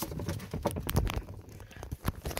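Plastic bottles and jugs knocking and rattling together on a pantry shelf as it is shaken, a quick irregular clatter of knocks.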